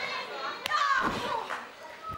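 Audience in the wrestling hall calling out in high-pitched, child-like voices, with a single sharp impact from the ring about two-thirds of a second in.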